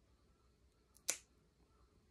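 Small scissor-type pet nail clippers snipping through a cat's claw once, a single sharp click about a second in.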